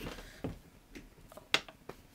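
Faint rustling and a few light taps as plush toys are handled and knocked over on a shelf, the sharpest tap about a second and a half in.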